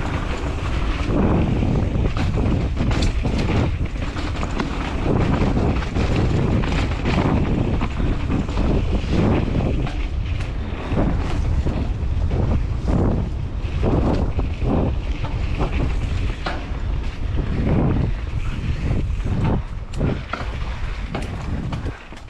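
Wind rushing over the microphone of a mountain bike rider's camera, with the bike's tyres rolling over a dirt singletrack and many short rattles and knocks as the bike runs over roots and rocks.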